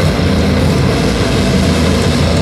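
Metalcore band playing live through a large PA: loud distorted guitars, bass and drums in a dense, steady wall of sound with a heavy low rumble and no vocals.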